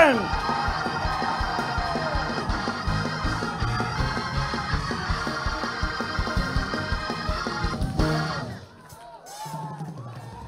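Organ playing loud held chords over quick, steady knocks during congregational shouting, then dropping out sharply about eight and a half seconds in.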